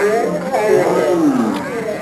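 Human voices slowed down by the edit into deep, drawn-out, roar-like sounds, with one long falling glide in pitch about a second in.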